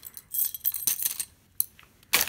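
An aluminum toy dog tag and its metal ball chain clinking, with a few light, irregular clinks and one sharper click near the end.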